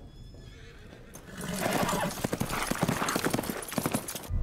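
Horses galloping, hooves clattering fast and unevenly, with a horse whinnying. It comes in suddenly about a second and a half in, after a quiet first second.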